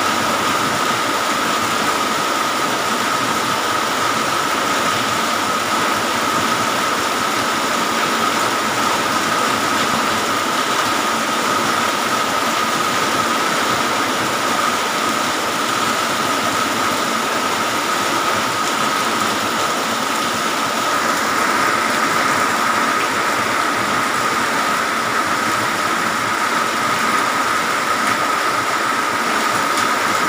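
Heavy rain falling steadily, a dense even hiss that grows a little brighter about two-thirds of the way in, with a steady high tone running underneath.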